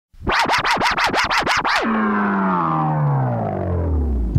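DJ turntable scratching: about eight quick back-and-forth scratches, roughly five a second, then a long pitched tone that slides steadily down, like a record winding down to a stop.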